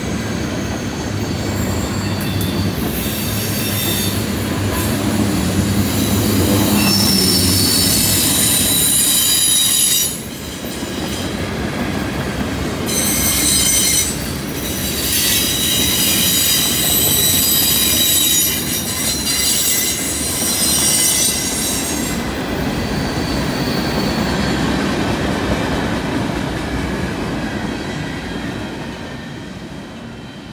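Freight train tank cars rolling past on a curve, their steel wheels squealing on the rails in long high-pitched stretches over a low rumble of the cars. The squealing stops about two-thirds of the way through, and the rumble fades near the end as the last cars pull away.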